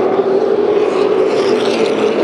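Super late model stock cars' V8 engines running at racing speed as the pack goes by, a steady drone with no change in pitch.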